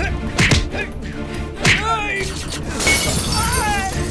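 Film fight sound effects over background music: two sharp punch impacts with men's shouts, then car window glass shattering about three seconds in as a man crashes through it.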